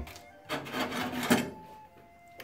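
Handling noise from a paper instant-noodle pot being shifted and a metal fork being picked up: about a second of rubbing and scraping starting about half a second in, over faint background music.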